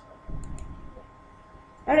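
A couple of computer mouse clicks about half a second in, advancing the presentation slide, over a faint steady hum.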